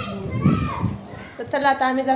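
Speech: high-pitched voices talking in short phrases, with a pause in the middle.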